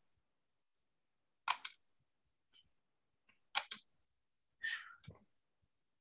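Computer mouse clicks in quick pairs, about a second and a half in and again about three and a half seconds in, with a short cluster of clicks and scuffs near the five-second mark.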